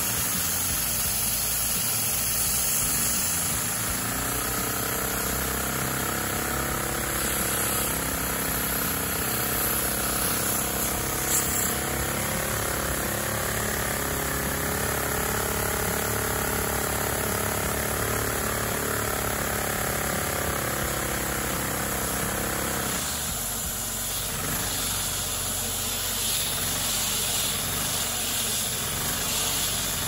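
Lego V-twin vacuum engine running on the suction of a vacuum cleaner: the cleaner's steady rushing hiss under the engine's running hum, whose pitch rises slightly and then falls. About three-quarters of the way through the pitched hum cuts off abruptly, leaving the rushing air.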